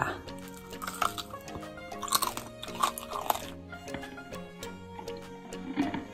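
Crunchy bites into crispy deep-fried pork skin (lechon kawali), with chewing, over steady background music. The loudest crunches come about one, two and three seconds in.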